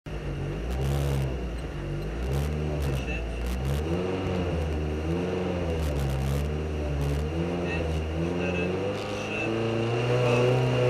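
Opel Astra OPC rally car's four-cylinder engine, heard from inside the cabin, revved up and down over and over, about once a second, while the car waits at the stage start for the countdown. A few sharp clicks sound over the engine.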